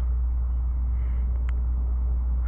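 Steady low rumble with a faint background hiss, and one faint click about one and a half seconds in.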